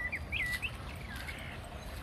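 Birds chirping: a quick run of short, rising and falling calls in the first second, then fainter calls, over a steady low background rumble.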